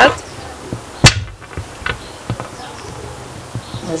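Kitchen utensils knocking during food preparation: one loud sharp clack about a second in, then a few light ticks, over a low steady hum.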